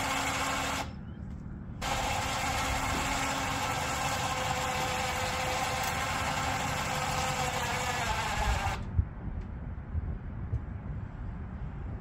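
Electric winch motor and gearing running under a light load as it reels in its line. It stops a moment about a second in, starts again a second later and runs steadily for about seven seconds, then cuts off, followed by a sharp knock.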